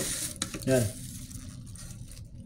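Plastic wrapping crinkling and rustling as food wrapped in it is handled, with a sharp click a little before half a second in. A short voiced sound from the man about two-thirds of a second in.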